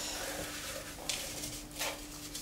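Digestive biscuits being crushed up: soft, crackly crunching and crumbling, with two louder crunches in the second half.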